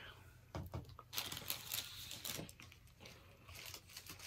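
Biting into and chewing a Taco Bell chalupa's fried shell: faint, irregular crunching and crackling starting about half a second in.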